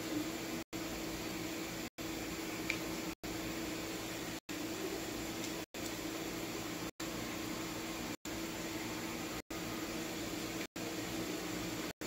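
Steady background hiss with a low hum, cut by brief silent gaps a little more than once a second. One faint click about three seconds in.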